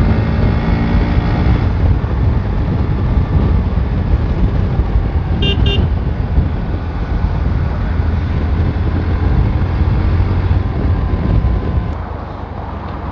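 Heavy wind rumble on the microphone over a Bajaj Pulsar NS125's single-cylinder engine as the motorcycle rides in traffic. The engine note is clearest in the first two seconds, and there is a short horn beep about five and a half seconds in.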